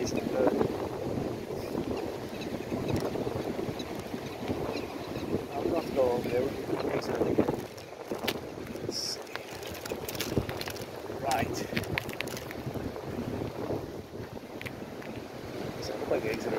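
Wind buffeting the microphone of a camera riding on a moving bicycle: a rough, uneven rumble that drops for a moment about eight seconds in, with a few short clicks and rattles.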